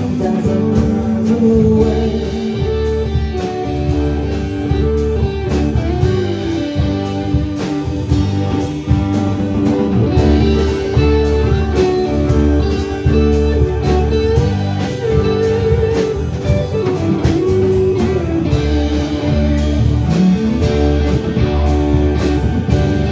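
Live rock band playing an instrumental passage without vocals: electric and acoustic guitars over bass, keyboard and a steady drum beat, with a melody line sliding up and down in pitch.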